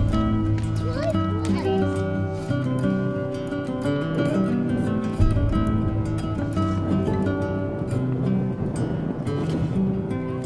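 Background music: a song with a singing voice over held chords.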